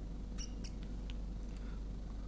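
Marker pen squeaking faintly on a glass lightboard in a few short strokes as a dashed line is drawn, over a low steady hum.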